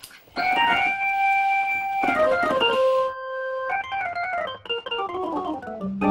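Korg portable electronic organ playing a jazz intro solo: sustained high notes, a short pause, then fast descending runs of notes.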